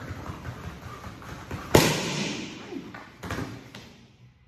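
Bare feet thumping on the floor while running in place, then one sharp, loud slap of two handheld kick paddles clapped together a little under two seconds in, the signal to drop to the floor; a few more thuds follow near the end.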